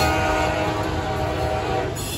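A diesel locomotive air horn sounding one long chord that cuts off near the end, over the steady rumble of double-stack container well cars rolling past.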